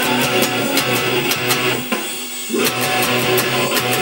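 Electric guitar, a 1993 Ibanez S540 with Bareknuckle Painkiller pickups through a Line 6 X3 Live, played along with a full band recording with regular sharp hits. Shortly before halfway the band drops out for about half a second, then comes back in.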